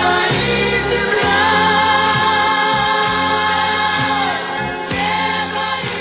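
Pop song performed live with a band: a man singing long held notes over bass and band backing.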